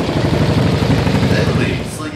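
A long, loud belch from a young man, a low rough rattling sound lasting about two seconds and fading near the end.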